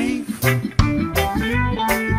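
Reggae song playing, with guitar and bass over a steady beat.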